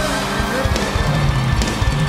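A country-rock band playing live: electric guitar over bass and drums.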